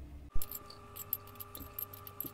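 A sharp knock about a third of a second in, then butter and oil in a hot frying pan crackling with scattered sharp pops, over a faint steady hum.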